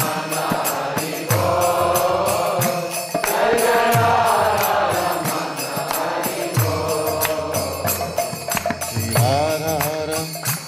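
Devotional mantra chanting: a man's voice singing a melodic chant over a steady beat of percussion.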